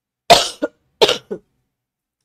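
A woman coughing: two hard coughs, each followed quickly by a smaller one.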